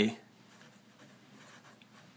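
Sharpie felt-tip marker writing on paper: faint scratching strokes as letters are drawn.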